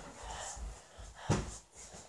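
A child's faint breathing, then a single dull thump a little past halfway through.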